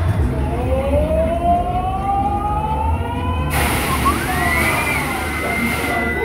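A fairground ride's siren effect: a siren-like tone rising slowly in pitch for about three seconds over a heavy low music beat. An abrupt cut about halfway through brings in a second, higher tone that rises and then holds steady.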